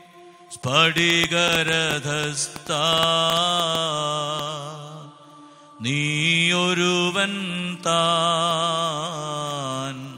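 Sung liturgical chant of the Holy Qurbana: long, held vocal phrases with a slight waver in pitch. There are two phrases, with a short break about five seconds in.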